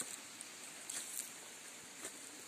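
Quiet outdoor background hiss with a few faint rustles and ticks.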